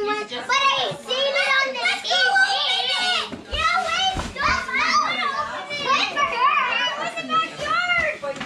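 Several young children talking and calling out over one another in excited, high-pitched chatter, with a few dull bumps about three and a half seconds in.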